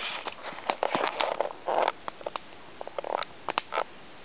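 Wood campfire crackling, with irregular sharp pops and snaps and a few short hissing rushes as the fire is stoked and flares up.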